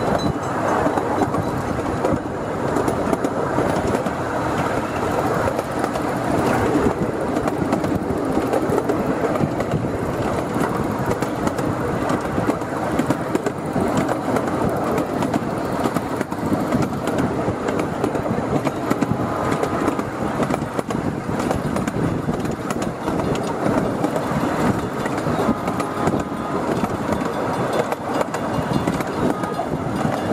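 Miniature railroad train rolling along the track, heard from aboard a riding car: a steady rumble of the cars with frequent small clicks and rattles of the wheels on the rails.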